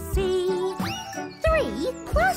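Jingly children's cartoon music: a held note, then a quick rising pitch swoop about a second in and a fast dip-and-rise swoop shortly after, like comic sound effects.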